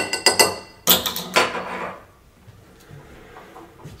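Metal spoon clinking against a glass while muddling a cherry and sugar in its bottom: a quick run of ringing taps, then a second clatter about a second in.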